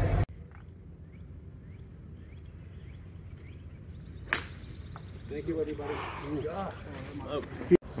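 A golf iron striking the ball once about four seconds in, a single sharp crack, followed by spectators' voices talking close by. Before the shot there is quiet open-air ambience with a few faint bird chirps.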